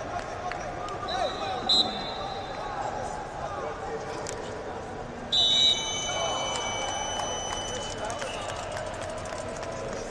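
Referee's whistle in a large gym: a short blast just under two seconds in and a louder one a little after five seconds, whose high tones linger for about two seconds, over steady crowd chatter. The second blast comes as the period clock runs out, the signal that the period has ended.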